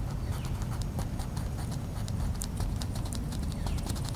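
Colouring strokes on a coloring-book page laid on a metal-mesh picnic table: a quick, irregular run of light scratchy ticks, several a second, over a steady low rumble.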